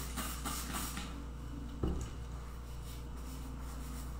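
Trigger spray bottle squirted a few times in quick succession onto a cloth: short hissing spurts in the first second. A single light knock follows about halfway through.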